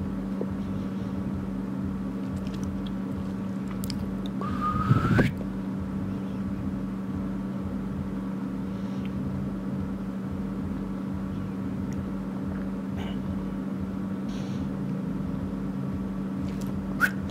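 A steady low hum, with a short squeaky whine that rises in pitch about four and a half seconds in and is the loudest sound.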